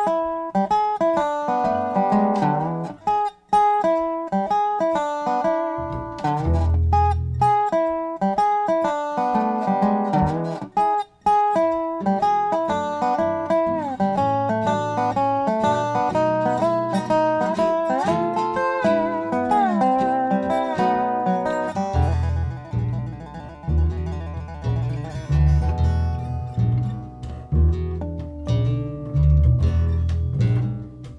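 Background music: a plucked guitar melody with quick changing notes, joined by heavier low notes about two-thirds of the way through.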